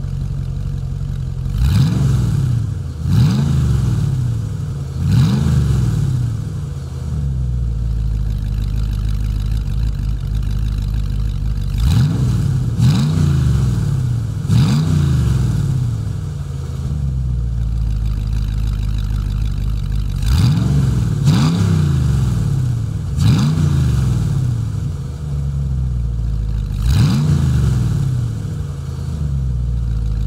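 Mid-mounted 6.2-litre LS3 V8 idling through its exhaust, blipped about ten times in three groups. Each rev rises quickly and falls back to idle.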